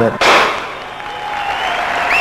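Audience applause and cheering that breaks out suddenly just after the start, eases off over the next second, then carries on steadily.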